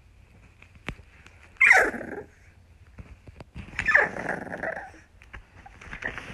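A puppy vocalising close to the microphone: two short whiny growls about two seconds apart, each sliding down in pitch, with scattered small clicks between them.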